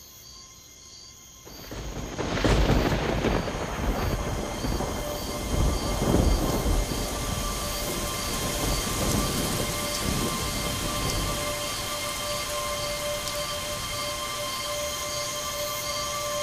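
Thunderstorm: thunder rumbling about two seconds in and again around six seconds, then heavy rain falling steadily.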